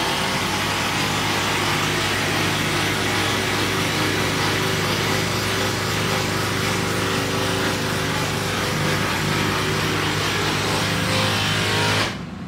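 A small engine runs steadily at an unchanging pitch, with a strong hiss over its low hum. It cuts off abruptly at the end.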